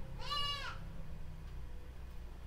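A single short, high-pitched animal cry that rises and then falls, lasting about half a second, over a low steady background hum.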